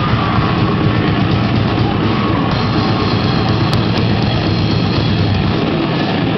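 Death metal band playing live: loud, dense, distorted music with rapid drumming.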